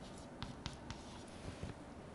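Chalk writing on a chalkboard: a few faint, sharp taps and short scratchy strokes as the chalk marks out a short expression.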